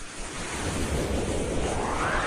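Logo-animation whoosh sound effect: a swell of rushing noise that builds up, with a sweep rising in pitch from about a second in.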